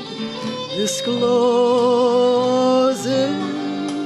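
A woman singing a slow gospel hymn to her own acoustic guitar. About a second in she holds a long note with vibrato, then moves to a lower held note near the end.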